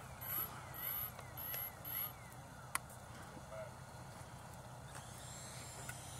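FMS BAE Hawk 80 mm electric ducted-fan RC jet heard faintly at a distance, growing louder in the last second or so as it comes in low. Repeated short chirps sound in the first two seconds, and there is a single click a little before the middle.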